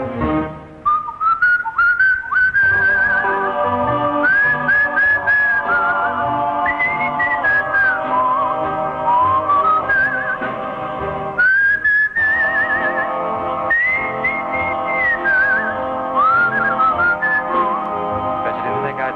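A whistled melody with wavering vibrato and little trills, carried over soft sustained backing chords: the instrumental break of a 1950s pop ballad, between sung verses.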